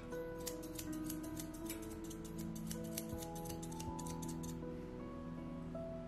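Grooming shears snipping quickly through a dog's coat, about five cuts a second, stopping a little past three-quarters of the way through, over background music.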